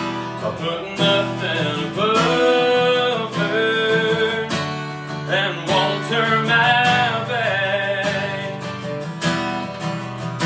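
A man singing a country ballad while strumming a steel-string acoustic guitar. The voice stops near the end, leaving the guitar strumming alone.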